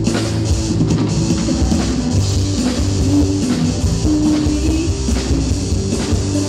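Live rock band playing loud and steady: drum kit, electric guitar and bass guitar through stage amplifiers.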